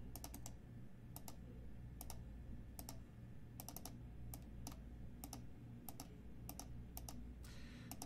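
Faint clicking of a computer mouse and keyboard: single and double clicks at irregular intervals, roughly one every half second to second, over a low steady hum.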